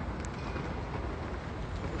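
Steady low rumble and hiss of background noise picked up by a phone microphone, with a faint click about a quarter second in.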